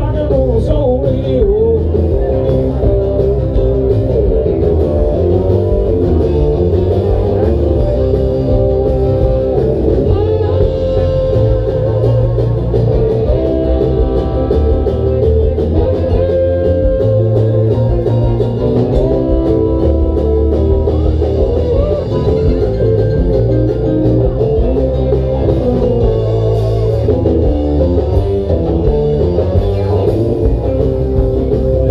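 Band playing blues-rock music with electric guitar and a drum kit, loud and unbroken, with some singing.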